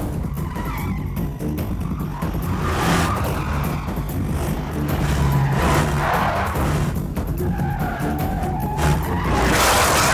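Car-chase sound effects over background music: van engines running and tyres skidding on loose dirt, in several swelling surges, the loudest near the end as a wheel spins in the dust.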